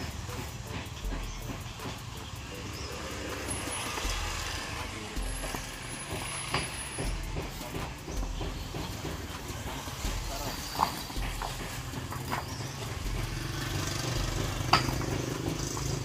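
Sand being scraped level with a wooden screed board, with a few sharp clicks of concrete paving blocks knocking together as they are set. A low steady rumble runs underneath.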